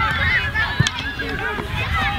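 Many young girls' voices calling and chattering over one another on an open playing field, with wind rumbling on the microphone.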